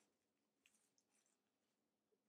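Near silence, with a few faint, soft rustles of a cut coffee-filter paper flower being unfolded by hand.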